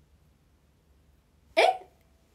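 Near silence, then about one and a half seconds in a young woman's single short, sharp exclamation of surprise, 'eh!'.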